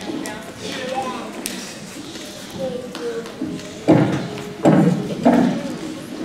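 Indistinct chatter of young children and adults in a school gym, with a few louder voice outbursts in the second half.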